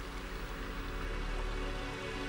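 Soft background music of sustained, held tones.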